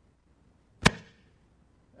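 A single sharp knock on the wooden lectern a little under a second in, with a short fading tail, over faint room tone.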